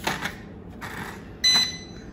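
A small plastic drone being turned round by hand on a wooden floor for its horizontal calibration: several short scrapes and knocks of its body and arms on the boards. About one and a half seconds in comes a short, high electronic beep.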